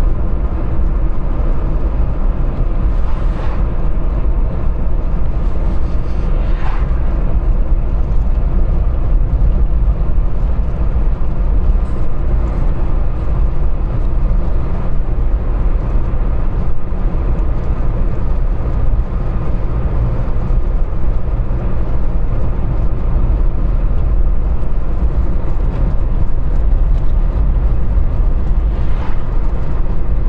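Steady low rumble of a car driving at road speed, heard from inside the cabin: engine and tyre noise on the road.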